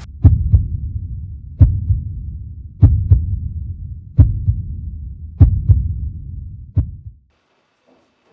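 Heartbeat sound effect: about six slow, doubled 'lub-dub' thumps roughly 1.3 seconds apart over a low rumble. It cuts off suddenly about seven seconds in.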